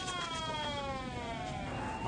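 Siren wailing: one long tone sliding down in pitch, then beginning to rise again near the end.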